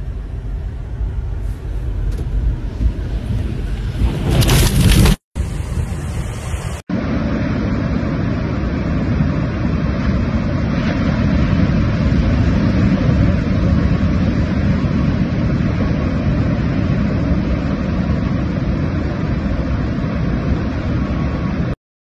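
Storm surf and wind noise. The first part is heard from inside a car, with rain on the window, and rises to a loud burst of noise about five seconds in. After two brief cuts comes a long, even rush of surf and wind that stops abruptly near the end.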